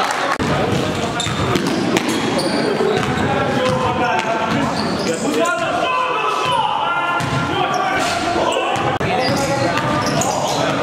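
Live basketball game play in a gym: a ball bouncing on the hardwood court, with players' voices calling out throughout.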